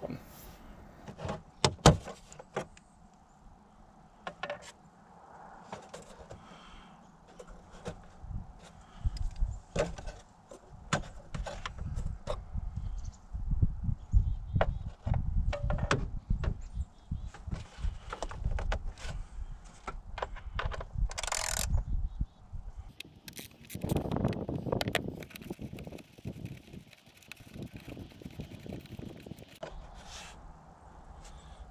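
Scattered clicks, knocks and plastic rattles from hands working in the engine bay of a Jeep Grand Cherokee, pulling off the oil filler cap and the plastic V6 engine cover. A low rumble runs through the middle stretch, and there is a scraping handling noise a little before the end.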